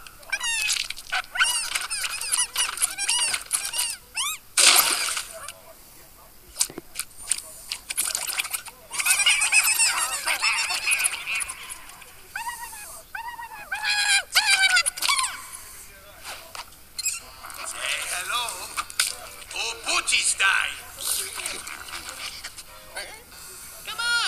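Animated film soundtrack with music under high, squeaky creature vocalizations that glide up and down, and a short sharp noisy burst about five seconds in.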